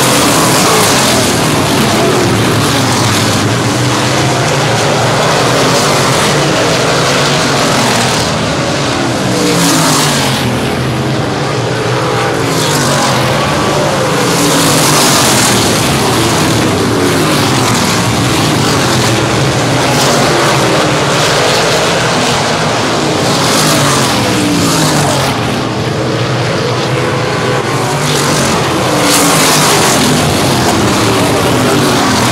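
A pack of winged pavement sprint cars racing, their V8 engines at high revs. Several engines overlap, their pitch falling and rising again and again as the cars lift for the turns and accelerate out of them.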